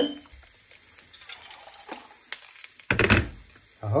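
Pot of tomato sauce simmering quietly on the stove, with a few small clicks of handling and a louder bump about three seconds in.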